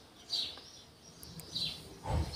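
Faint bird chirps: two short, high calls, one shortly after the start and one near the end.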